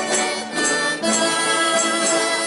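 A small accordion playing a folk tune, its reedy chord changing about a second in. Light percussive ticks come about twice a second.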